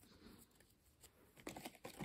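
Near silence with faint rustling and a few light taps from a stack of trading cards being handled, mostly in the second half.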